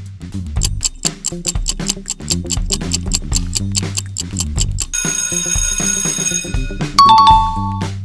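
Quiz countdown-timer music: fast, even ticking over a bass line for about five seconds. A ringing alarm-like sound follows, marking the time running out, and a loud two-note chime comes about a second later.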